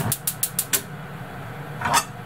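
Gas hob's piezo igniter clicking rapidly, about seven or eight clicks in the first second, as the burner is lit to medium heat, then a steady low hum.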